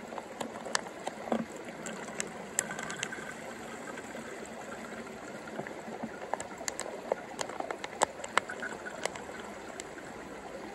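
Water trickling from a squeezed soft plastic pouch through an inline squeeze filter into a plastic bottle, with frequent sharp crinkles and crackles from the pouch as it is wrung.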